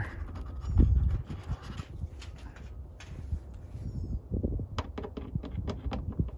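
Hand screwdriver driving a screw through a plastic hood bug deflector into its mounting bracket: scattered small clicks and handling knocks, with a heavier thump about a second in. Faint bird chirps twice in the background.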